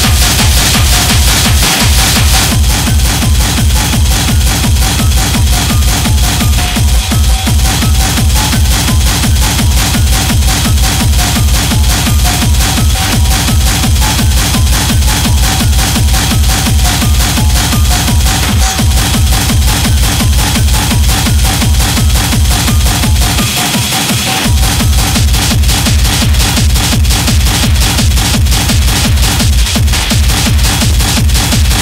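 Hardtech/Schranz techno: a fast, steady four-on-the-floor kick drum under dense, distorted high percussion. The kick drops out for about a second roughly four-fifths of the way through, then comes back.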